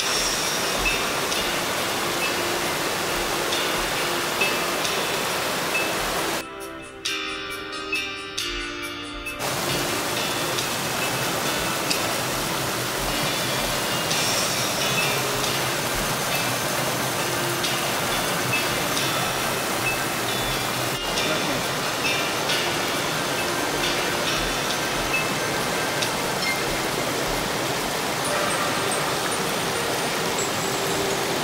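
A rocky mountain brook rushing and cascading over boulders, a loud steady rush of water. Background music with chime-like notes runs faintly beneath it, and plays alone for about three seconds, roughly six seconds in.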